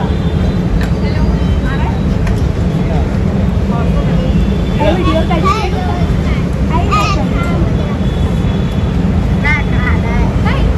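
Snatches of people talking, heard over a steady low street rumble.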